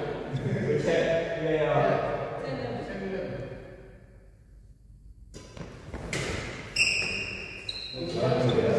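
Indistinct voices echoing in a large hall for the first few seconds, then badminton play: a few sharp racket hits on the shuttlecock. The loudest hit comes near the end, with a brief high squeak.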